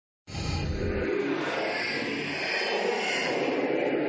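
A steady rushing noise that starts abruptly just after the beginning and holds an even level, with no beat or tune.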